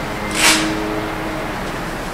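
Meeting-room tone: a steady background hiss with a faint hum, and one short hiss about half a second in.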